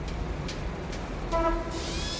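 Opening of a pop track: a steady, train-like rumbling noise with a short horn-like tone, the loudest moment, about one and a half seconds in.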